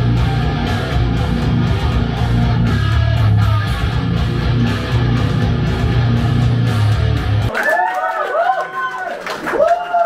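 A rock band playing live through the venue's PA: distorted electric guitars, bass and drums. The music cuts off abruptly about seven and a half seconds in, and a voice speaking into the microphone follows.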